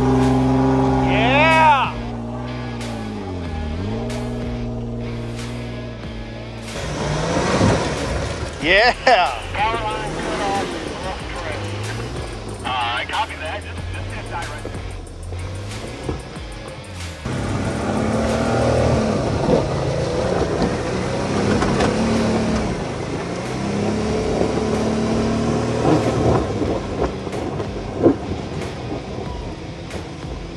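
Off-road Jeep engines running through mud, their revs rising and falling repeatedly as the vehicles work along the muddy trail.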